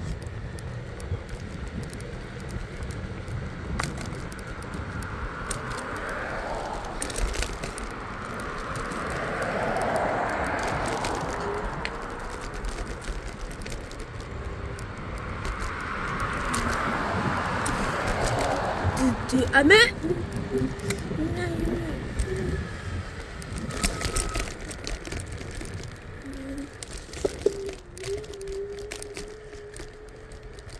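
Wind and tyre noise from an electric scooter rolling along a concrete sidewalk. Cars pass on the road alongside, rising and fading twice, about ten seconds in and again a few seconds later.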